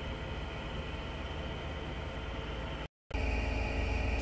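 Steady low mechanical hum with a background hiss, cut off abruptly about three seconds in.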